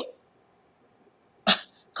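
A pause in a woman's speech: near silence, broken about one and a half seconds in by a single short, sharp burst of breath from her, a cough-like sound, just before she speaks again.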